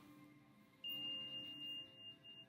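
A single high, steady ringing tone, like a chime, starts suddenly just under a second in and holds.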